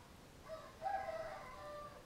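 A faint, drawn-out animal call lasting about a second and a half, starting about half a second in, rising slightly in pitch and then falling away.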